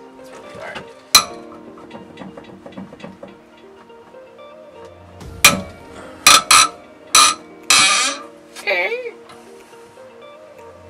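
Background music with sustained notes, over sharp metallic clicks and clanks from a breaker bar and 14 mm 12-point socket on a Subaru EJ25's cylinder-head bolts. One sharp crack comes about a second in, and a quick run of louder cracks and scraping bursts follows past the middle, as the head bolts are broken loose.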